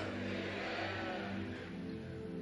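Soft background music: a sustained keyboard chord held steady as a low drone in a large hall.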